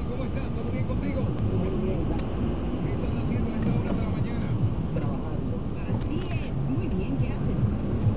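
Steady low road and engine rumble inside a moving car's cabin, with indistinct voices talking over it.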